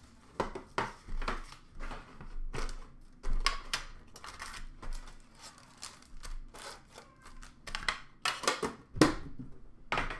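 Foil hockey-card packs crinkling and rustling as they are handled, with clicks and knocks of the metal tin they come out of. The sounds come in short irregular bursts, the loudest about nine seconds in.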